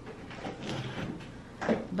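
Faint, irregular handling noise in a small room, then a woman starts speaking near the end.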